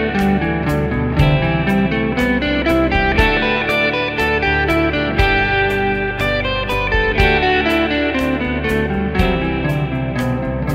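Electric guitar playing single-note runs of the G major pentatonic scale in its fourth position, over a backing track with a steady drum beat.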